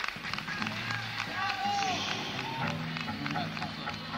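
Between-song stage sound on a live rock recording: voices calling out from the stage and audience, scattered clicks and handling noise, and a couple of low held instrument notes, at a low level after the song has stopped.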